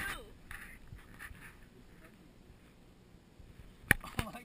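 A voice trailing off at the start, faint murmuring, then a quiet stretch broken by a single sharp click near the end.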